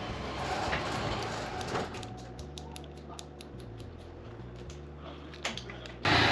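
ASV clutch lever's reach adjuster being turned, clicking through its detents in a quick run of small clicks, about five a second, with a louder click near the end. The lever is being set closer in from a reach that is too far out.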